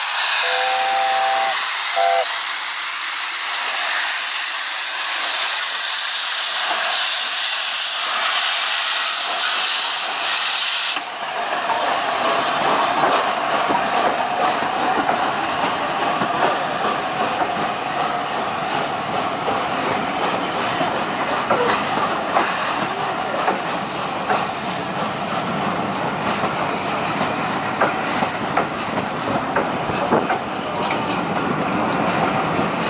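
LNER A4 Pacific No. 60009's chime whistle sounds briefly about a second in, over loud steam hiss from the locomotive's open cylinder drain cocks as it starts away. The hiss cuts off about eleven seconds in. From then on the coaches are heard rolling past, their wheels clicking over the rail joints.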